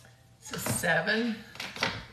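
Small hard objects clinking and clattering on a tabletop, with a few sharp clicks near the end and a brief wordless vocal sound in the middle.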